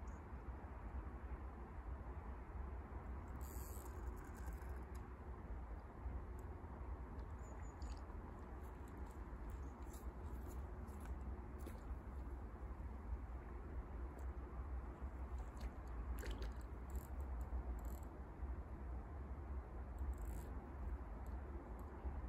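Low wind rumble on the microphone, with faint scattered clicks and rustles.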